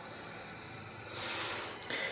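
Static hiss from the speaker of a 1991 Sony Mega Watchman portable black-and-white TV tuned to an empty analog channel, growing louder about a second in as the volume is turned up, then easing back a little.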